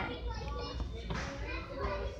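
Children's voices talking faintly, with a steady low rumble underneath.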